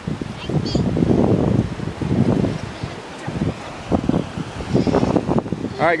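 Wind gusting across a phone's microphone in rough, uneven bursts, with surf washing in behind.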